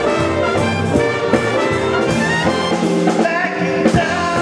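Live jazz big band playing a swing tune, with the trumpets, trombones and saxophones sustaining chords over a walking double bass and drums, and a male singer's voice over the band.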